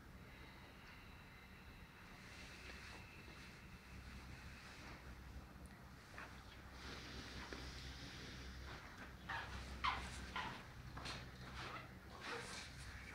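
A man's faint, slow breathing, with a few short, sharp breaths about nine to eleven seconds in.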